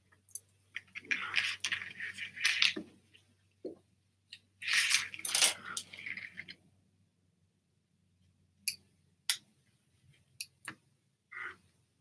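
Clatter and rustle of art supplies being handled on a table, including a clear acrylic stamp block with a rubber stamp mounted on it: two longer spells of rummaging in the first half, then a few short, light taps and clicks.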